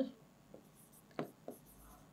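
A pen writing on a board: a few faint, short strokes as words are written by hand.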